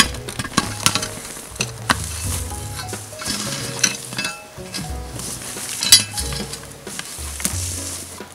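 A McLeod rake-hoe scraping and chopping into loose trail soil and root mat in a run of irregular strokes, raking the dug material down into one small spot. The sharpest strike comes about six seconds in.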